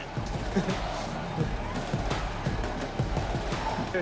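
Background music with a steady, even level and no clear beat.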